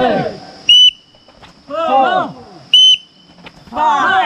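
Short, sharp blasts of a training whistle, one about every two seconds, calling the cadence of push-ups. Between blasts a group of trainees shouts together.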